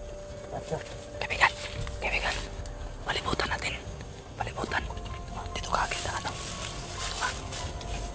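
Low whispered voices over background music made of long held tones.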